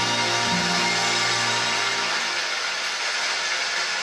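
Instrumental passage of a live stage band accompanying a Korean popular song, with sustained low notes and a dense wash of higher sound, no singing.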